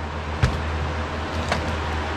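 A steady low hum with a sharp click about half a second in and a fainter one about a second later, as a small plastic super glue bottle and a bodkin are picked up from a fly-tying bench.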